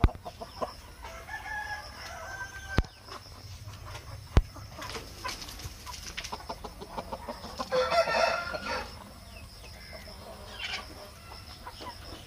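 Aseel chickens in a pen clucking, with a rooster crowing once, loudest about two-thirds of the way through. Two sharp clicks are heard a little before the middle.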